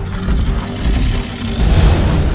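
Action sound effects under dramatic music: a heavy low rumble as the monster charges, then a loud rushing swell near the end as the fight closes in.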